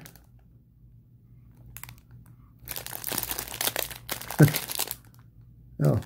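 Clear plastic cellophane wrapper of a 1987 Donruss baseball-card rack pack being crinkled and torn open, starting about halfway through, with one sharp, loud rip near the end.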